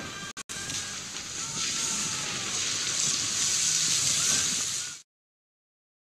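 Film soundtrack of a stormy sea, with rushing waves and wind and faint music beneath. There are two brief dropouts near the start, and the sound cuts off suddenly about five seconds in.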